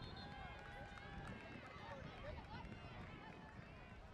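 Many faint, overlapping voices calling and shouting: coaches, players and spectators at a youth flag football game.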